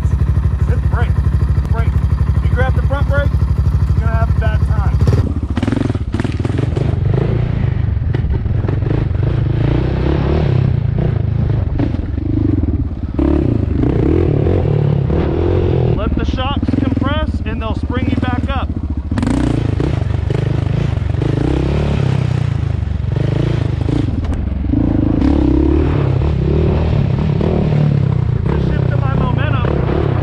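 Honda TRX700XX sport quad's single-cylinder engine idling steadily. About five seconds in it gives way to the quad being ridden, its engine rising and falling with the throttle, with clattering from the machine over rough dirt.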